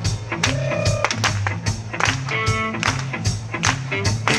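Live rock band playing: a drum kit keeps a steady beat under electric guitars and a bass guitar.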